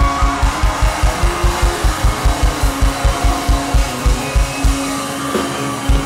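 Live folk-rock band playing, with fast kick-drum beats about five a second under sustained acoustic guitar and other instruments. The drums drop out for about a second near the end, then come back in.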